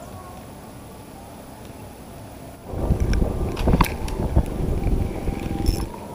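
Loud rumbling and knocking handling noise on a body-worn camera's microphone as the wearer moves, starting about two and a half seconds in and cutting off sharply just before the end; before it only a quiet background.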